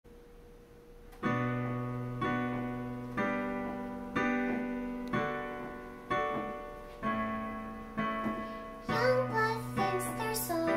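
Casio electronic keyboard on a piano sound playing a slow intro: the first chord comes about a second in, then chords are struck about once a second, each fading away. A girl's singing voice comes in near the end.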